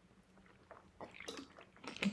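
A person sipping water from a glass: a few faint swallows about a second in, otherwise near silence.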